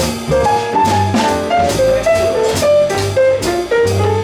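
Jazz piano trio (piano, upright double bass and drum kit) playing an instrumental passage with no vocal: a running single-note melody line over a bass line and steady cymbal strokes.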